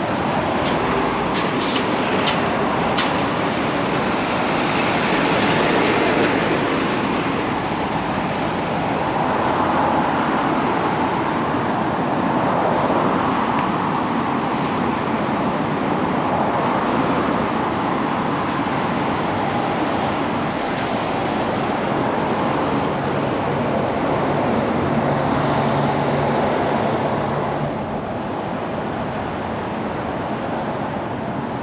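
Steady roar of passing road traffic, swelling and fading as vehicles go by, with a few sharp clicks in the first few seconds.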